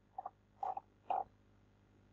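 Three short, faint vocal murmurs from a man, about half a second apart, with silence between them.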